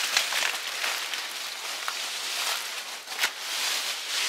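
Rustling and light crackling of dry cut palm fronds and brush, with a few small clicks.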